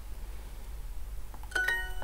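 Duolingo's correct-answer chime: two quick bright notes about a second and a half in, ringing briefly, signalling the answer was marked right.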